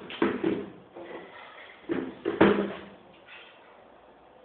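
Two clusters of short thumps about two seconds apart, the second the loudest.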